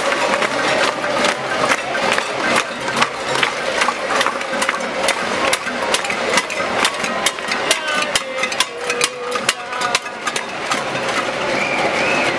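Pots and pans being banged by many people in a marching crowd: a dense, irregular clatter of sharp metal strikes, several a second, over the crowd's voices.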